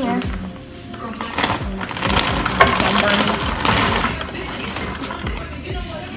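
Plastic bag of frozen stir-fry crinkling and its frozen pieces rattling as they are tipped into a skillet, with background music playing throughout.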